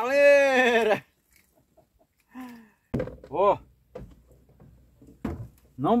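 A man's long, loud yell held on one pitch, breaking off about a second in, as a traíra is hauled in on a bamboo pole. After a lull come a few short vocal sounds and a single dull thunk near the end.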